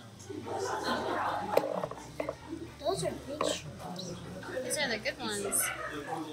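Indistinct voices talking, with a few light clicks of chopsticks against a plate as food is moved into the hot pot.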